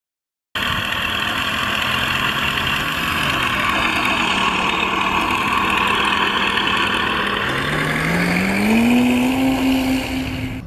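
Engine and propeller of a radio-controlled scale model biplane running steadily, then rising in pitch and getting louder about eight seconds in as it throttles up for takeoff.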